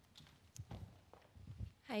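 Footsteps of a person walking briskly on a hard floor: a series of dull thumps about two a second, followed by a woman saying "Hi" at the very end.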